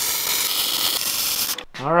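Wire-feed welder arc running a bead on square steel tubing: a steady hiss that stops about a second and a half in.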